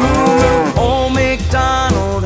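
A cow's moo near the start, over backing music for a children's song.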